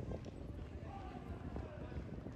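Footsteps on pavement as a person walks, with people in a crowd talking nearby; one voice stands out about a second in.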